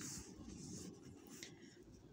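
Faint rustling and scratching over quiet room tone, with soft hissy touches near the start and again about one and a half seconds in; close to silence.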